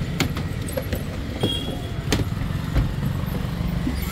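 Steady low rumble of road traffic, with a few sharp knocks from footsteps on wooden stairs.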